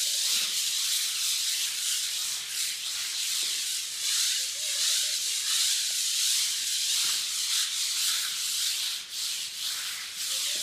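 Coarse sandpaper on a hand pad rubbed in circles against a painted concrete pool wall, a continuous scratchy rasp that swells and dips with each stroke. The old paint is being keyed for a fresh coat.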